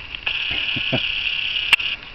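Video camera's zoom motor whirring steadily at a high pitch as the lens zooms in, stopping just before the end, with one sharp click near the end.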